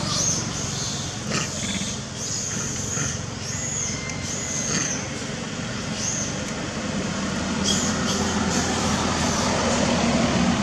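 Steady low rumble of distant vehicle traffic, with a string of short, high-pitched arching chirps repeating about once a second.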